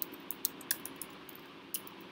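A few scattered keystrokes on a computer keyboard, short sharp clicks at uneven intervals over a faint steady hiss, as a heading is typed and a typo backspaced.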